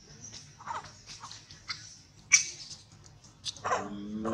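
Macaque calls: a few short squeaks and a loud, sharp chirp about two seconds in, then a whimpering cry that rises and falls near the end.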